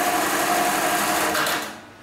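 Computerised bar tacking sewing machine (HighTex 430HM) running its automatic stitch cycle through 10 mm nylon rope: a fast, steady run of needle strokes with a steady whine. It stops shortly before the end, its bar tack finished.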